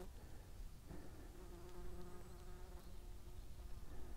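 A flying insect buzzing close by: a faint, steady hum that starts about a second in and fades out near the end.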